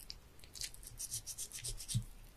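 A knife scraping in quick short strokes, several a second, over fish on a cutting board, with a soft knock near the end.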